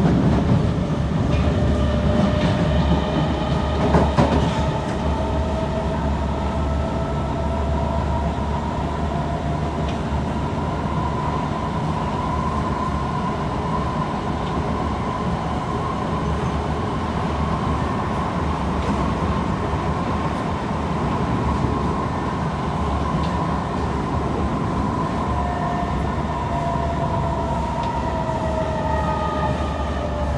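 Kawasaki C151 MRT train running at speed, heard from inside the car: a steady rumble of wheels on rail with the traction motors' whine held on one pitch, drifting lower near the end. A sharp knock comes about four seconds in.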